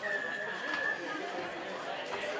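A referee's whistle blown once, a single held note of about a second at the start, over players' and spectators' chatter and shouting.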